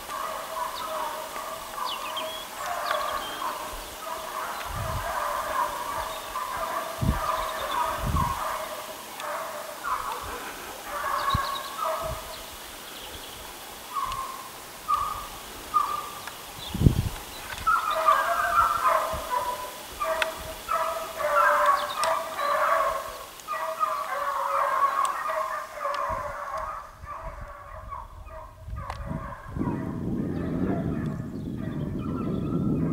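A pack of hunting hounds baying in the distance, a long run of short repeated yelps that is busiest past the middle and thins out near the end, as they follow a hare's scent trail. A few low thumps sound among the calls.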